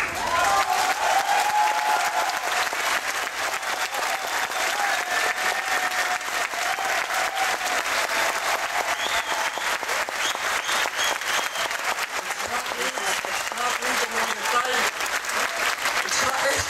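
A large crowd applauding at length, a dense, steady clatter of many hands clapping, with voices calling out over it.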